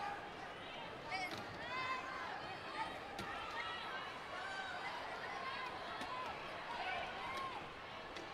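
Court sound from a wheelchair basketball game: players' voices calling across the court, with a few sharp knocks.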